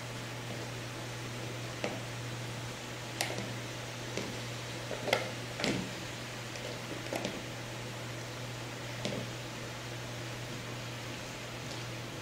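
Plastic slotted spatula stirring potato chunks in a pot of water, with scattered light knocks and clicks against the pot, over a steady low hum.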